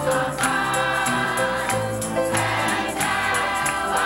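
Church choir singing an upbeat gospel song over instrumental accompaniment, with a steady beat of sharp strokes.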